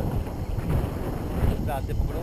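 Wind buffeting an action camera's microphone as the airflow of a tandem paraglider's flight hits it, a steady low rumble.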